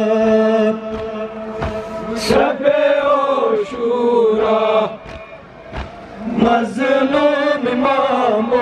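Male voices chanting a Kashmiri noha, a Muharram lament. A lead voice holds one long note, then sings falling, wavering phrases. Now and then a sharp slap cuts through from the mourners beating their chests (matam).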